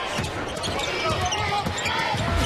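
Basketball game sound: a basketball bouncing on a hardwood court over a steady murmur from the arena crowd.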